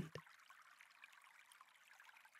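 Near silence: only a faint, steady hiss of a background ambience bed.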